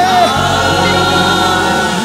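Gospel music: a choir singing a long held chord, with a lower part joining about half a second in.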